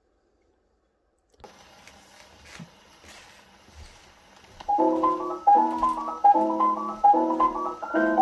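A 1946 shellac 78 rpm record played acoustically on an Orthophonic Victrola phonograph. After a moment of silence the needle runs in the lead-in groove with faint surface hiss and crackle, and a few seconds later a piano jazz recording starts loudly with a run of repeated chords.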